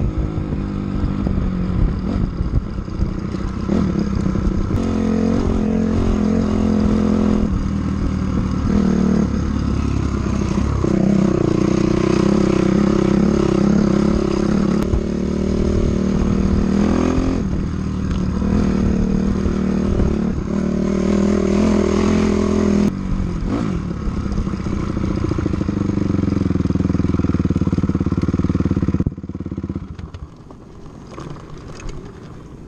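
Off-road vehicle's engine running under way on a dirt road, held at a steady pitch for several seconds at a time, with a handful of breaks where the pitch changes as the throttle eases or a gear changes. The engine sound drops off sharply about a second before the end.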